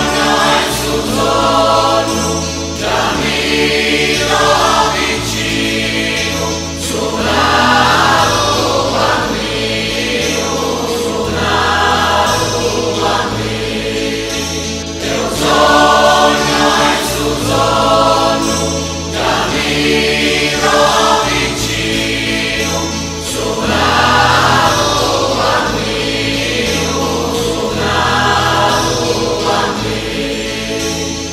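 Mixed choir of men and women singing a slow Christmas song in Sardinian, in phrases that rise and fall, over instrumental accompaniment with low sustained notes.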